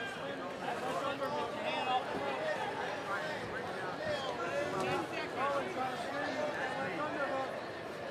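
Fight crowd, many voices shouting and talking over one another at an even level during a clinch.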